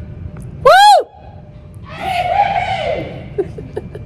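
A person's voice: a loud, short shriek that rises and falls in pitch, and about a second later a longer, breathier whoop.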